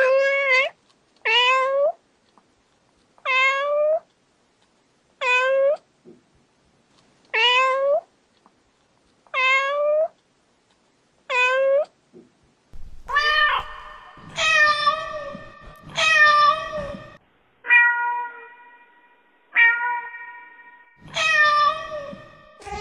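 Domestic cat meowing: a short, rising meow repeated seven times about every two seconds, then, from about thirteen seconds in, a run of six longer, steadier meows.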